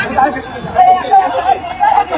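Speech only: several people talking at once, voices overlapping.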